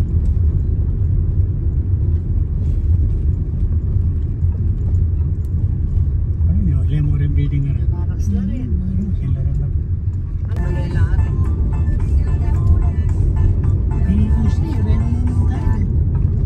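Steady low road rumble inside a moving car's cabin. A voice is heard briefly around the middle, and about two-thirds of the way in music with singing starts over the rumble.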